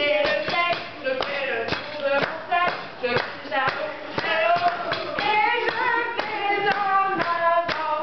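Women's voices singing a French grape-harvest action song together, with hand claps keeping the beat throughout.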